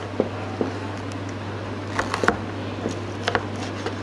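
A kitchen knife cutting through a frozen bait fish on a plastic cutting board, giving a few short clicks and knocks, the loudest about two seconds in. A steady low hum runs underneath.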